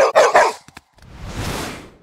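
A dog barks three quick times, then a whoosh of noise swells and fades over about a second.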